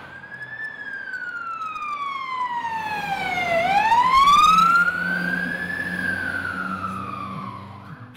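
Fire engine siren wailing in a slow sweep: the pitch falls for about three and a half seconds, climbs back over the next two, then falls again near the end, loudest in the middle.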